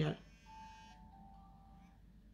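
Faint electronic beep tones: a short bright chime just after the start, then a few steady pure pitches, each held about a second, stepping down and then joined by a higher one.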